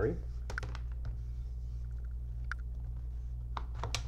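Scattered plastic clicks and taps from the battery being unlatched and taken out of the underside of an Acer Chromebook C7 laptop, the loudest click near the end, over a steady low hum.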